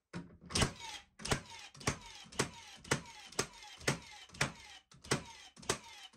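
Cordless Milwaukee M18 Fuel framing nailer firing 21-degree plastic-collated nails into stacked lumber, about ten sharp shots at roughly two a second, each followed by a short falling whine. The nailer is cycling rapidly with its converted 21-degree magazine.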